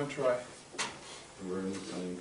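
Brief, indistinct vocal sounds from a person in a small classroom: a short mumble at the start and a held hum-like voice sound near the end, with a short sharp tick about a second in.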